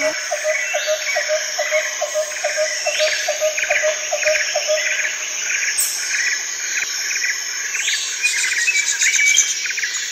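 Forest ambience: birds chirping over a steady high insect buzz. A low call repeats about three times a second through the first half and then stops.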